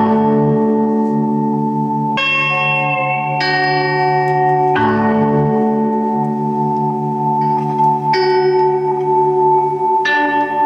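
Ambient live music: sustained, bell-like ringing chords from two lap-style steel guitars, layered over a low pulsing tone. New notes come in about two, three and a half, five and eight seconds in, shifting the chord each time.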